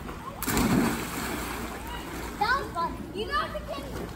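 Two children jumping feet-first into a swimming pool together: one big splash about half a second in, the rush of water fading over about a second, then children's voices calling out.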